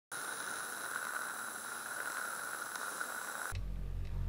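Steady hiss of television-style static, cutting off suddenly about three and a half seconds in and giving way to a low hum.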